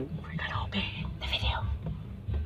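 A person whispering or muttering a few soft, breathy syllables.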